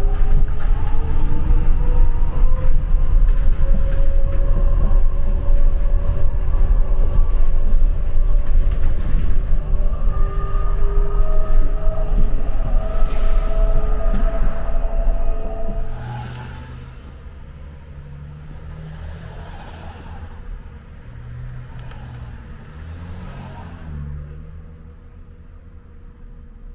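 Shuttle bus under way, heard from inside the cabin: heavy road rumble with a steady motor whine in several tones. About sixteen seconds in, the rumble and whine fall away sharply, leaving a much quieter running noise.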